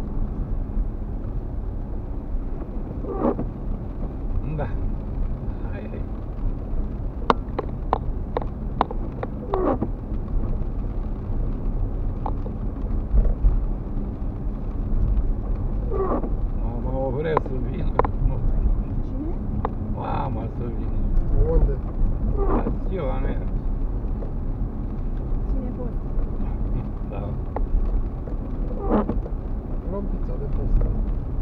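Car cabin noise from a car driving on a wet road: a steady low rumble of engine and tyres, with occasional voices and a few sharp clicks.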